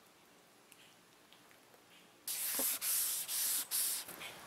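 Hand wet sanding: 400-grit wet sandpaper folded over a soft sponge block rubbed back and forth on soapy, primed fiberglass, cutting back a black guide coat. Four strokes of about half a second each start about halfway in, after near silence.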